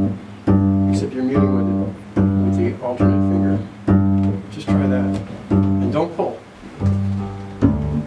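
Double bass pizzicato: the same low note plucked with two fingers about once a second, each note ringing briefly and then stopped before the next.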